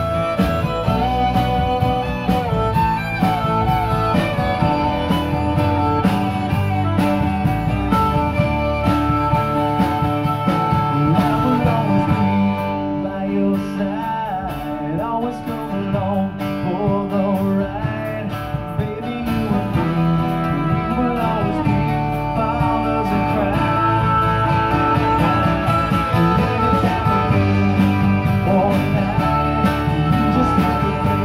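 Live acoustic band playing through a small PA, with acoustic guitars prominent; the music eases a little for a few seconds about halfway through.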